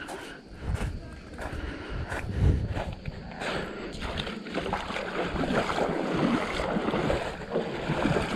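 Wind buffeting the microphone in low gusts, the strongest about two and a half seconds in, over gentle water noise at a pebble shore.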